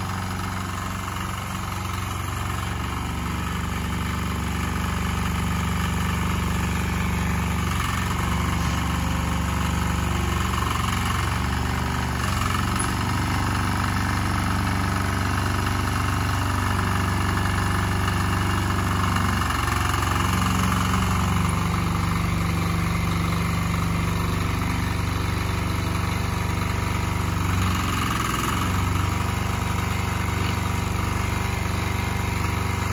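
WEIMA diesel walk-behind tractor's single-cylinder engine running steadily while pulling a trailer, its pitch stepping slightly up and down a few times as the engine speed changes.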